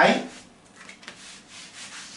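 Felt board eraser rubbing marker off a whiteboard, a soft hiss in repeated back-and-forth strokes.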